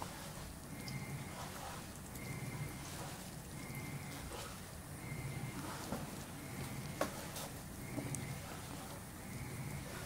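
Wet grated daikon radish being squeezed by hand in a metal mesh strainer and pressed onto a plate: soft squelches, drips and small sharp clicks. Under them a low sound swells and fades about every second and a half.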